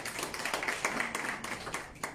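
A small group of people clapping, a brief round of applause that tapers off near the end.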